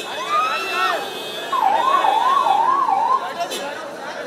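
A warbling siren, rising and falling four times over under two seconds, cuts in about a second and a half in over a crowd shouting around a car.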